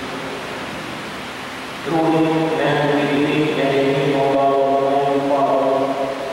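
A liturgical chant sung in long held notes starts about two seconds in, over a steady background hiss.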